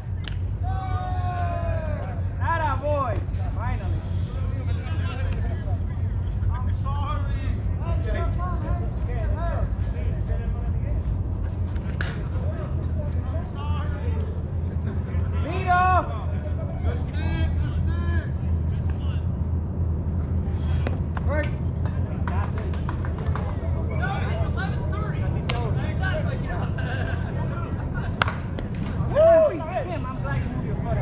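Softball players' distant shouts and chatter across the field over a steady low rumble. Near the end comes a sharp crack of the bat hitting the ball, followed by a louder shout.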